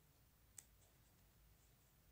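Near silence: room tone, with a single faint click about half a second in.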